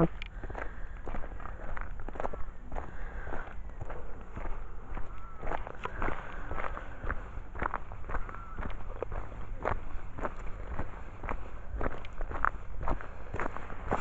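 Footsteps crunching on a gravel path, irregular steps of someone walking uphill, over a low rumble of wind on the microphone.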